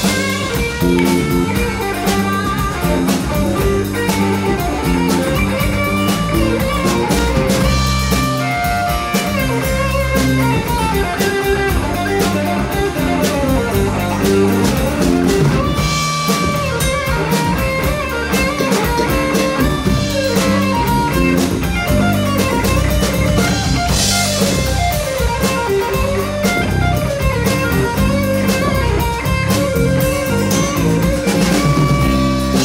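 Live rock band playing with guitars, bass and a drum kit, with several cymbal crashes along the way.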